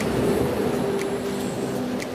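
Background music: held notes that change pitch every half second or so, over a steady hiss.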